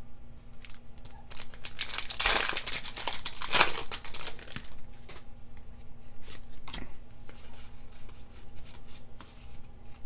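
A foil Pokémon booster pack being torn open, with a crinkly rip about two seconds in and another about a second later. Then come the small rustles and clicks of trading cards being slid and flicked through by hand.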